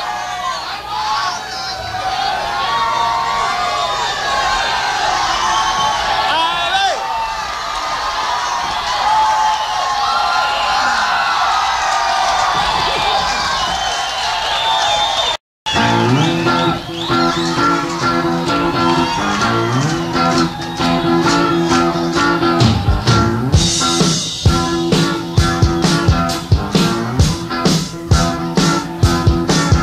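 Live rock band in a club. An audience cheers and shouts. After a brief dropout in the recording, the band starts a song with held, changing chords, and drums come in with a steady beat a few seconds before the end.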